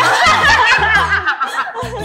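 A group of women laughing and giggling excitedly all at once, loudest in the first second and then trailing off, over background music with steady low notes.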